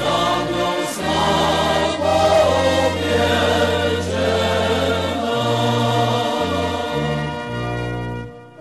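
Choral anthem music: a choir singing over sustained instrumental accompaniment, the bass line moving between notes in the second half.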